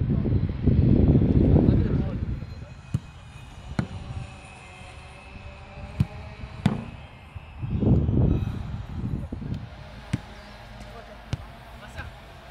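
Sharp thuds of a football being kicked, scattered a second or more apart, with faint distant shouts between them. Two spells of low rumble come in the first two seconds and again about eight seconds in.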